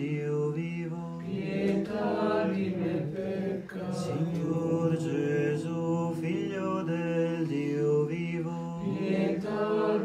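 Liturgical chant in the Eastern Christian style: voices singing a melodic line over a steady held drone note.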